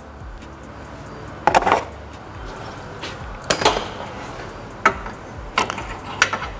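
Several sharp knocks and clicks at uneven intervals as a splitter tie's rod ends are worked into their clevis brackets on a car's front crash bar, over quiet background music.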